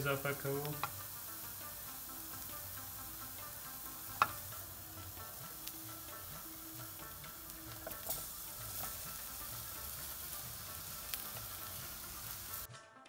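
Onion, pea and spice filling sizzling in a nonstick frying pan while a silicone spatula stirs it and scrapes mashed potato in from a bowl. A sharp tap about four seconds in and a few lighter taps later.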